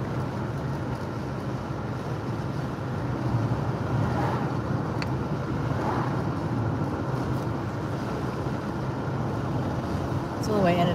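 Steady road and engine noise of a moving car, heard from inside the cabin: a continuous low rumble.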